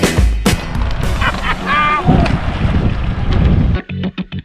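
Wind rushing over the camera microphone as a group of road cyclists rides past, with a short voice call about halfway through. Background music cuts back in at the very end.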